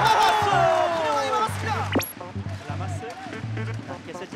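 Edited highlight soundtrack: background music with a repeating bass line under a commentator's drawn-out excited call that slides down in pitch and fades over the first second and a half. About halfway through, a quick rising sweep effect marks a cut to another clip.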